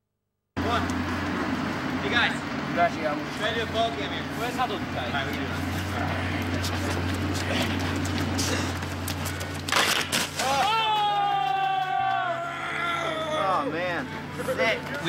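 Voices over a steady low hum, then one long, held voice call that slides slightly down in pitch near the end.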